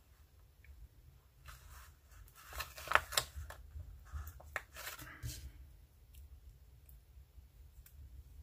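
Paper rustling and crackling as a sheet of planner stickers is handled and stickers are peeled off, a scratchy run of sounds from about a second and a half in to about five and a half seconds, loudest around three seconds. A few light ticks follow.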